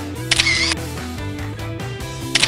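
Background music with a camera-shutter sound effect a third of a second in.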